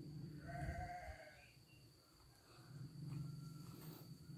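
A faint animal call, heard once about half a second in, wavering in pitch. Under it runs a low hum that drops out briefly in the middle.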